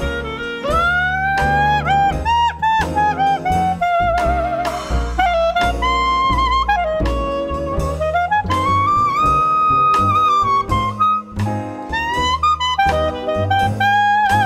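Trad jazz band in an instrumental break: a clarinet solo leads, with a swooping upward glide about half a second in and bending, vibrato-laden notes, over a rhythm section keeping the beat.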